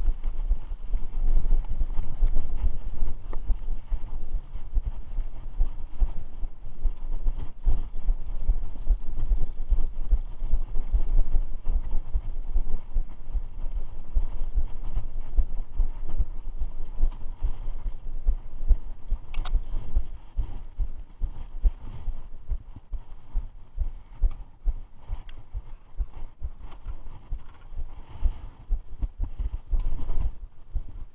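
Mountain bike ridden fast over a rough dirt and grass trail, heard from a camera on the rider: a continuous low jolting and wind buffeting on the microphone, with many quick knocks from bumps. It gets somewhat quieter in the last third.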